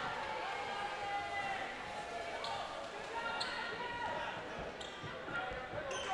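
Quiet high-school gymnasium during a free throw: a basketball bounces a few times on the hardwood floor under faint crowd chatter, with the echo of a large hall.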